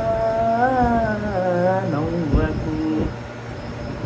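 A man singing a song melody unaccompanied, in long drawn-out notes that bend slowly in pitch. The notes get shorter and lower about two seconds in and stop about three seconds in.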